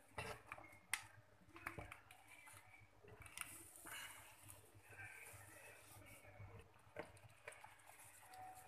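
Faint knocks and clicks of a spatula against a clay pot as a pot of curry is stirred, a few sharp taps in the first two seconds and another near the end, over a soft hiss.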